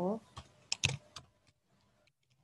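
Computer keyboard typing: a few sharp keystrokes in the first second or so, then fainter key taps.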